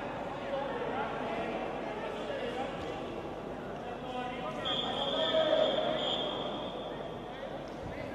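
Indistinct voices echoing in a large sports hall, with a single steady, high-pitched whistle-like tone lasting about a second and a half around the middle.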